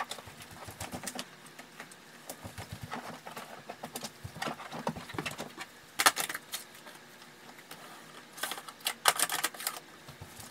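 Household tidying noises: objects being picked up, moved about and set down, with rustles and a string of light knocks and clatters. The sharpest knocks come about six seconds in and in a cluster around nine seconds.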